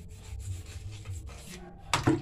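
A bare hand rubbing and pressing wet cement around a pipe set into a concrete wall, an uneven gritty scraping. A loud sharp knock comes near the end.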